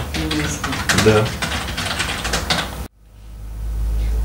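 A burst of rapid, light clicks of typing on a keyboard. About three seconds in, the sound cuts out abruptly, and a low hum then swells up.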